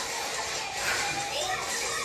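Faint distant voices, like children at play, over a steady background hiss.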